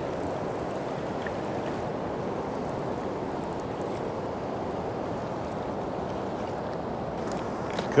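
Steady rush of a fast-flowing river running over rocks and riffles.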